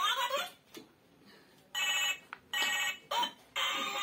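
Toy telephone playing its electronic ringing tone: two short rings about two seconds in, with sweeping electronic chirps before and after.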